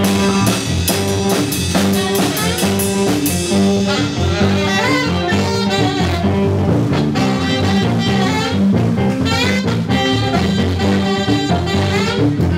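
Live blues band playing with drum kit and electric guitars in a steady driving beat, the song under way just after a count-in.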